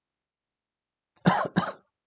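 A man coughing twice in quick succession into his hand, starting just over a second in.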